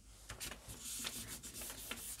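Hands rubbing and pressing over a sheet of paper on a gel printing plate: a faint, soft brushing of skin on paper with a few light ticks, as the paint is pressed onto the postcard beneath.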